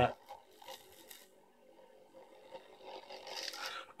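Faint, steady hum of a 24-volt geared DC motor running at full speed. A soft rustle comes about three seconds in.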